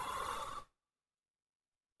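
A short breathy exhale close to the microphone, ending under a second in.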